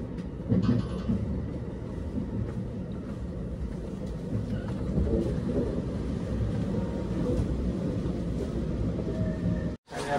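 Running noise of a JR West 289 series electric train heard from inside the carriage, a steady low rumble as it pulls into a station alongside the platform, with a single thump about half a second in. The sound cuts off abruptly just before the end.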